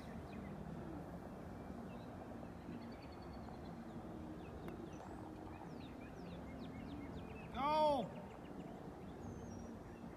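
Outdoor ambience with faint bird chirps over a steady low murmur. About three-quarters of the way in comes one short, loud call that rises and falls in pitch.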